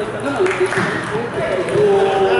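Table tennis ball clicking off the bats and the table in a rally, over voices talking in the hall.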